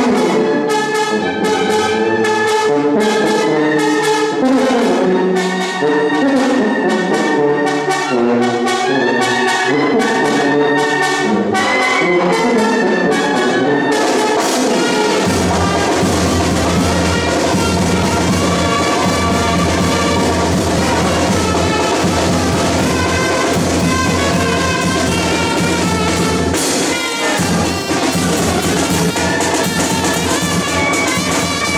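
Band music with brass and drums. About halfway through it becomes fuller, with a heavy low beat.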